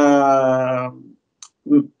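A man's voice holding one drawn-out hesitant vowel for about a second, then a brief faint click and a short syllable as he starts speaking again.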